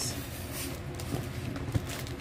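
Faint handling noise from paper gift bags being shifted in a cardboard box, over a low room hum, with a couple of light ticks in the second half.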